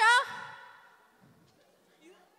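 A voice through a stage microphone ends a drawn-out phrase just after the start, its sound hanging and dying away in the hall over the next second, then near quiet.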